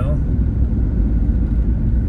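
Steady low rumble of road noise inside a car driving at highway speed.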